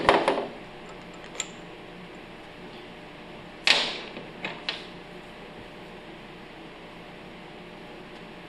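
Metal pump parts (the removed head and bolts) set down on a steel workbench: a sharp clack at the start, a louder clack with a short ring about three and a half seconds in, then a couple of lighter clicks, over a steady low room hum.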